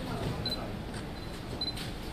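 Press photographers' cameras clicking, several shutter releases, with a few short high beeps, over a low murmur of voices in the room.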